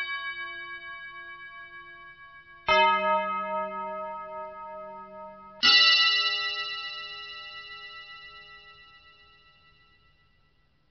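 Struck bell-like tones ringing out. One is already fading, then two more strikes come about three seconds apart. Each rings on and dies away slowly, and the last fades almost to nothing near the end.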